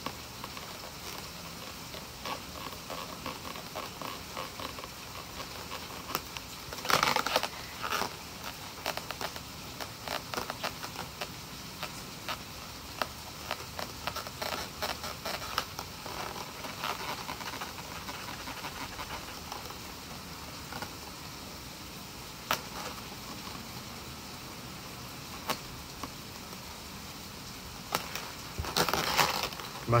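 A white Edding 750 paint marker scratching and tapping on latex balloons as the eyes are coloured in, mixed with rubbing of the balloon figure as it is handled. The sounds come as irregular small clicks and scratches, in louder bunches about seven seconds in and just before the end. The marker is probably running dry.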